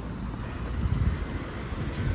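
Wind rumbling on the microphone over street traffic noise, with a car driving past on the road.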